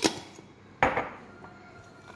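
Glass walnut jar being handled and set down on a hard countertop: two sharp clinks about a second apart, each with a short ringing tail.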